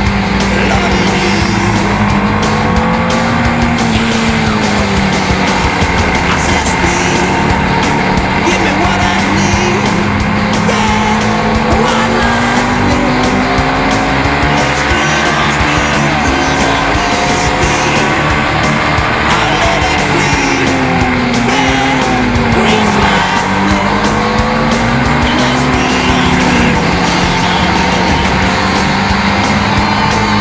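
Sport motorcycle engine running at high revs on a race track, heard from onboard, its pitch mostly steady with a few sharp drops and climbs back as the bike slows and speeds up again; background music plays alongside.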